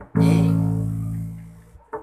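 Electric bass guitar plucked once on the note A. The note rings and fades for about a second and a half, then is damped just before the next note.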